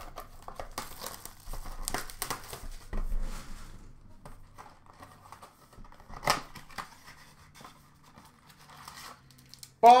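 A cardboard blaster box of hockey card packs being torn open and handled: rustling, crinkling and tearing of cardboard and pack wrappers, with a sharp tap about six seconds in.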